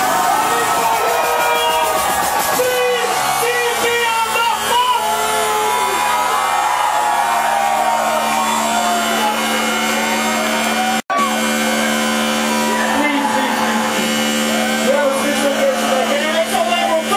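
Loud club dance music from a DJ set, with sustained low synth notes, under a close crowd shouting and whooping. The audio drops out completely for an instant about eleven seconds in.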